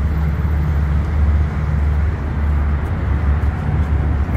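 A steady, loud, low engine drone with no change in pitch, like a motor idling nearby.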